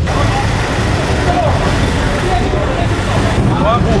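Steady vehicle and traffic rumble with faint, indistinct voices in it.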